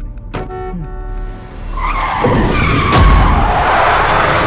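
Trailer sound design of a car skidding: tyres screeching loudly from about two seconds in, with a heavy thump about three seconds in, over music that opens with a sharp musical hit.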